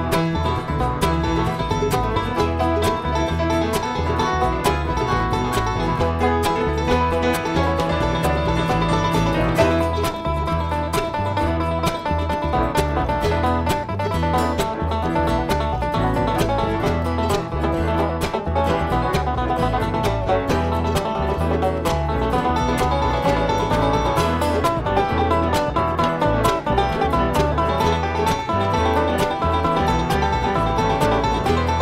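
Instrumental passage from a bluegrass string band, with banjo and guitar picking busily over a steady bass line and no singing.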